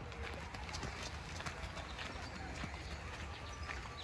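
Footsteps crunching on a gravel path, a run of short irregular steps, over a low rumble of wind on the microphone.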